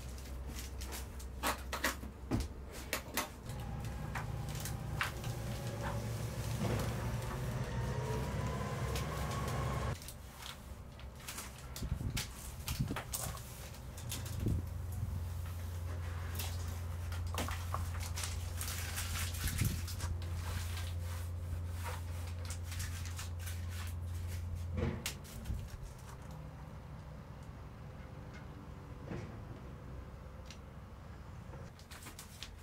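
Handling noises from aluminium foil tape and insulation board being worked: scattered clicks, knocks and rustles. Behind them a steady low hum starts and stops twice.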